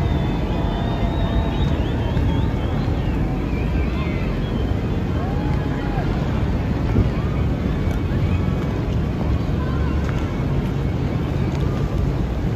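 A boat engine running steadily, a low even rumble, with wind on the microphone and faint voices in the background.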